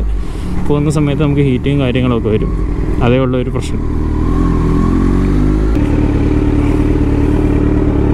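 Kawasaki Z900's inline-four engine running at low speed under a man's voice; about six seconds in the low rumble drops away and the engine settles to a steady idle as the bike comes to a stop.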